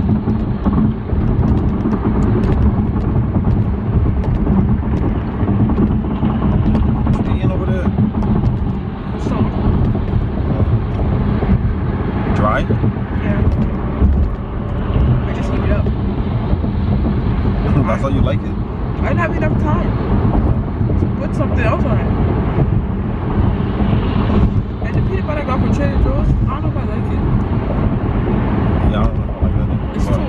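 Steady road and engine noise inside a moving car's cabin, with quiet talking at times.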